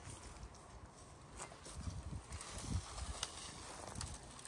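Footsteps over dry, matted grass: a few soft low thuds in the second half, with a couple of sharper clicks.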